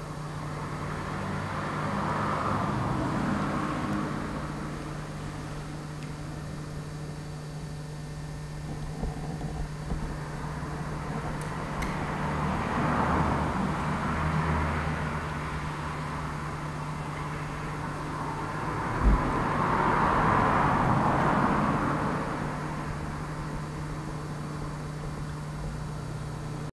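Steady low hum under three slow swells of rushing noise, each rising and falling over a few seconds, with one short low thump near the end.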